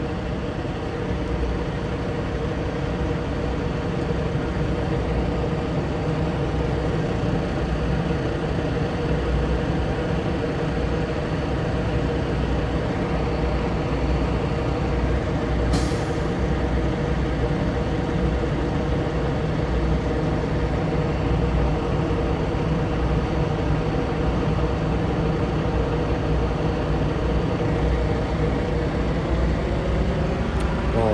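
Heavy diesel truck engine idling steadily, with a short sharp hiss about halfway through.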